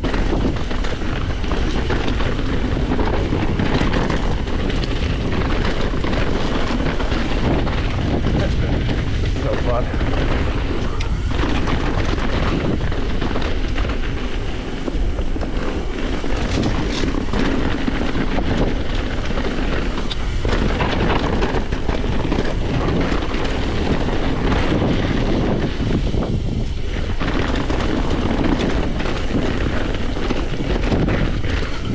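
Wind buffeting the microphone of a mountain bike descending dirt singletrack at speed, with steady tyre noise and frequent knocks and rattles from the bike over roots and rocks.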